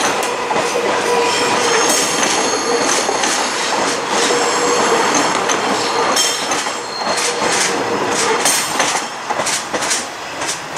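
Korail Bundang Line electric multiple unit running past close by at low speed, its wheels squealing in steady high tones on the curve. Repeated sharp clacks come from the wheels over rail joints and points, thickest in the last few seconds as the rear of the train goes by.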